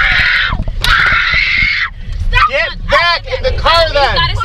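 A young girl screaming, two long high screams in the first two seconds, then sobbing in short wails that rise and fall in pitch.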